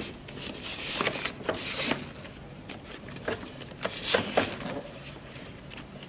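Fabric car seat cover rustling and rubbing as it is worked down over the plastic headrest shell of a Graco Extend2Fit car seat, with a scatter of light clicks and knocks from handling the seat.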